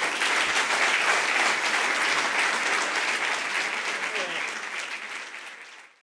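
Audience applauding in an auditorium: dense, steady clapping that slowly dies away near the end, with a brief voice audible a little past four seconds in.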